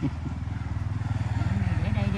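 A small engine, like a motorcycle's, running steadily with a fast even pulse and growing a little louder.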